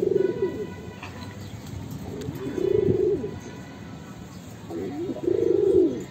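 Domestic pigeons cooing: three coo phrases about two and a half seconds apart, each swelling and then falling away.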